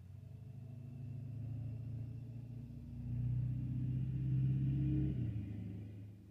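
A TCL 30V 5G phone's startup sound playing through its speaker as it reboots: a low droning chime that swells, adds a higher note about three seconds in, and stops about five seconds in.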